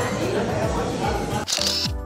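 Background music with a deep, falling-pitch kick drum beat over restaurant chatter. About one and a half seconds in, a camera shutter sound, after which the chatter drops out and only the music goes on.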